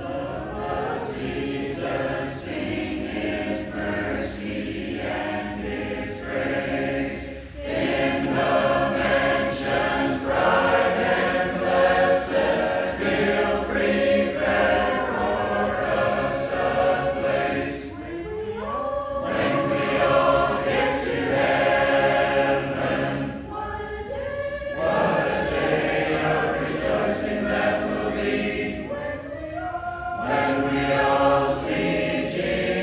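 A church congregation singing a hymn together without instruments, many voices in harmony, with brief breaks between lines.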